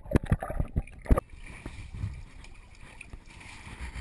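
Bath water sloshing and splashing against a GoPro's waterproof housing sitting in a tub of water, with a quick run of sharp knocks and splashes in the first second, then a quieter, steady wash of water.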